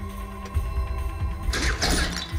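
Action-film score playing: sustained held tones over a deep bass rumble, with a brief hissing swell near the end.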